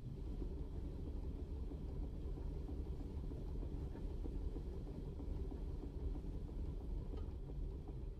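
Low, steady rumble of a Duo-Art reproducing piano's pneumatic mechanism running as the paper music roll winds forward through its printed leader. No piano notes sound.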